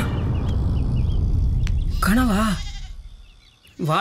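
A loud rumbling noise that fades away over about three seconds as a man falls, with a short wavering groan of pain about two seconds in.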